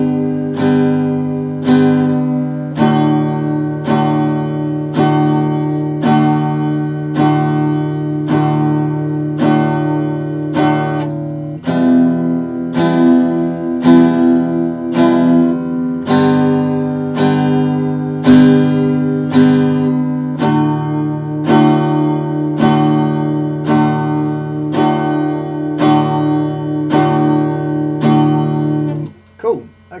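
Acoustic guitar strummed in steady even strokes, working through an E minor, G and D chord progression. The chord changes about 3, 12 and 21 seconds in, and the playing stops just before the end.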